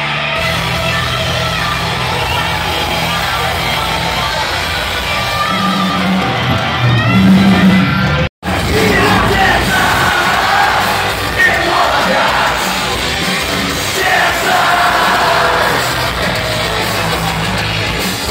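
Punk rock band playing live and loud in a concert hall, with singing and yelling over the music. The sound drops out abruptly for an instant about eight seconds in.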